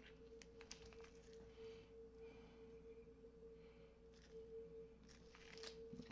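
Near silence: a faint steady hum, with a few faint ticks and light scraping from a stir stick in a plastic resin mixing cup.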